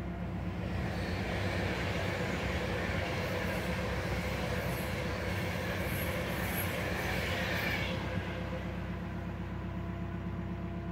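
Electric passenger train passing on the line alongside the canal: a rushing noise that swells about half a second in and fades out around eight seconds. Underneath, the narrowboat's engine runs steadily.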